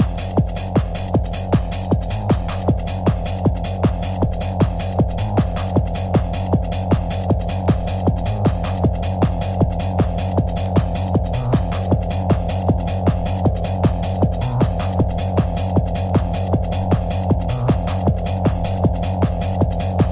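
Early-1990s hard trance track: a steady four-on-the-floor kick drum at a little over two beats a second under a throbbing low bass line, with the upper range muffled.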